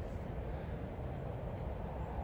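Steady low rumble of road traffic, even and unbroken, with no single vehicle standing out.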